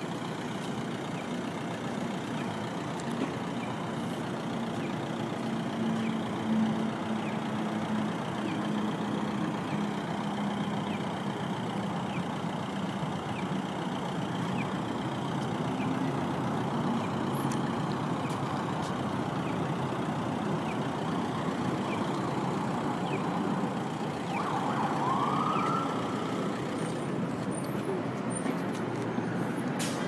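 Steady downtown traffic noise with vehicle engines idling, and one short police siren whoop, rising and falling, near the end.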